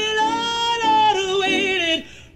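Music: a solo singing voice holding long notes that glide from one pitch to the next.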